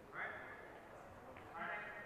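Steel fencing swords clashing twice, about a second and a half apart, each clash ringing briefly and fading.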